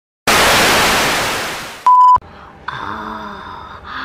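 Edited intro sound effect: a loud burst of static-like hiss that fades away over about a second and a half, then a short, high, steady beep.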